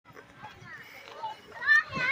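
Faint background chatter of people, then a child's high-pitched voice calling out near the end.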